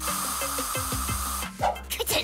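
Aerosol spray can hissing for about a second and a half, then cutting off sharply, over background music.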